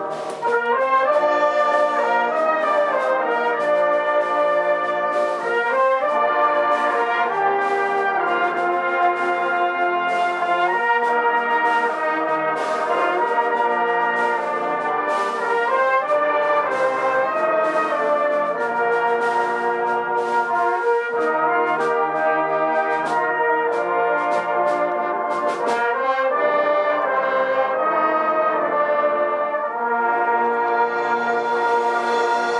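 A brass band of cornets, euphoniums, trombones and tubas playing a piece together in full harmony, with sharp percussion hits that stop about four seconds before the end.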